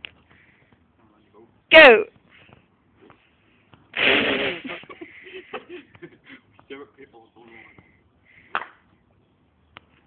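Voices: a loud cry falling in pitch about two seconds in and a loud outburst about four seconds in, then low chatter. Near the end comes a short sharp hit, a golf club striking a ball off grass.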